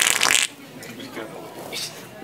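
Sharter Pro prank toy letting out a loud, wet, sputtering fart noise that stops about half a second in.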